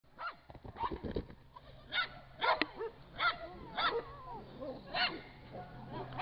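A dog barking repeatedly, about eight short, sharp barks.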